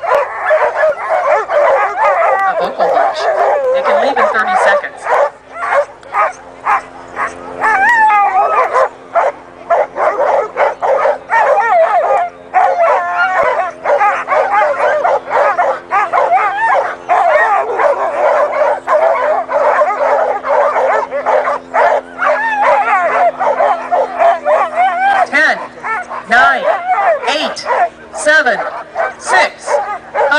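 A team of harnessed sled dogs barking and yelping nonstop, many voices overlapping, as the excited dogs wait to start a race. A steady low hum runs underneath through most of it.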